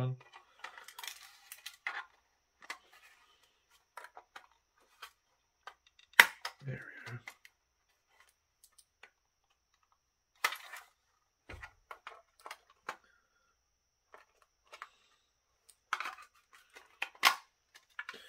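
Plastic case of a First Alert CO400 carbon monoxide alarm being pried apart with a screwdriver at its snap tabs: scattered clicks, creaks and knocks, with a sharp snap about six seconds in as a tab gives way.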